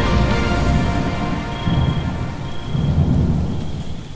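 Low rolling thunder with steady rain, the rumble swelling twice, under the fading last notes of sustained music.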